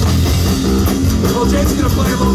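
Live rock band playing loudly: acoustic and electric guitars, electric bass and drum kit in a continuous full-band passage.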